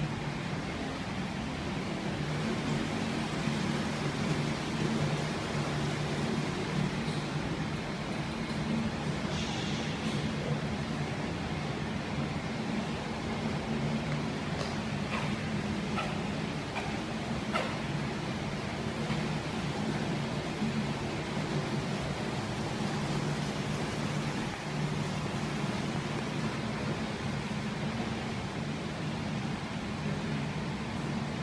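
Steady machinery hum with a hiss over it, the room tone of an aquarium hall from its water pumps and air handling. A few faint clicks come about halfway through.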